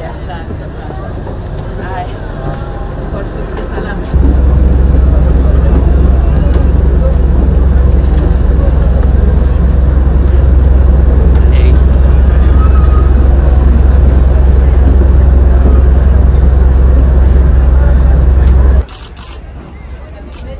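Passenger chatter in a ferry's crowded cabin. About four seconds in it gives way suddenly to a loud, steady low rumble on the ferry's open deck, which cuts off just before the end.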